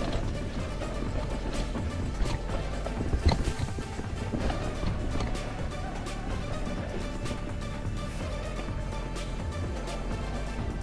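Background music running steadily, with scattered short knocks and rattles from a mountain bike riding over a rough dirt trail.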